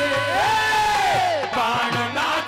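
A man singing a devotional kirtan song through a PA microphone, drawing out one long note that rises, holds and falls away.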